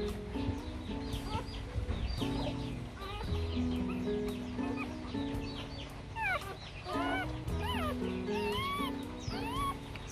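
Newborn Rottweiler puppies squeaking, many short high squeaks that come more often in the second half, over background music.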